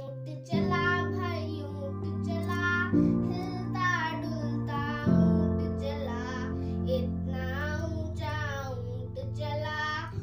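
A young girl singing a Hindi children's rhyme over a backing of sustained instrumental chords, which change about every two or three seconds.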